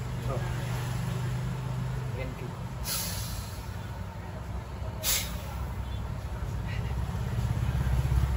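Steady low rumble of vehicle engines, with two brief sharp hisses about two seconds apart, near three and five seconds in.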